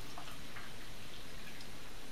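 A few faint drips and ticks of water in a glass beaker just filled with hot water, over a steady low hiss.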